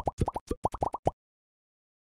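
Logo-animation sound effect: a quick run of about ten short, bubbly pops, each rising in pitch, packed into the first second.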